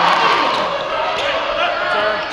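A basketball being dribbled on a hardwood court floor, with several sharp bounces late on, against a steady background of voices in the gym.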